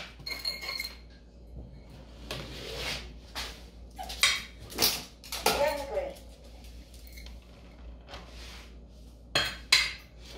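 Kitchen dishes and utensils clinking and clattering in a string of separate knocks as dog food is being prepared.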